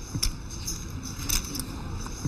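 Poker chips clicking lightly as a player handles them at the table: a few scattered sharp clicks over quiet room background.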